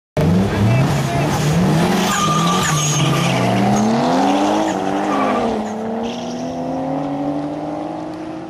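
Two drift cars' engines revving hard at high load, their pitch climbing, dipping briefly about five seconds in, then climbing again, with tyres squealing as the cars slide sideways.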